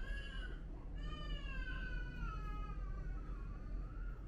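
A cat meowing twice: a short meow right at the start, then a long, drawn-out meow from about a second in that sags slowly in pitch.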